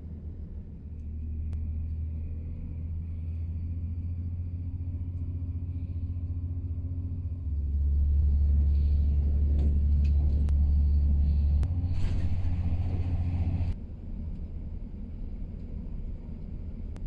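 Low rumble of a passenger train running, heard from inside the carriage. It grows louder about halfway through, with a few clicks and rattles, then drops suddenly near the end.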